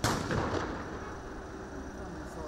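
A single loud gunshot at the very start, a sharp crack that echoes and dies away over about half a second.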